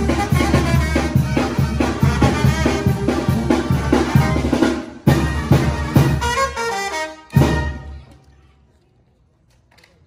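Brass band with drums playing a lively tune over a steady beat. It closes with a falling run and a last loud hit, and stops about seven and a half seconds in.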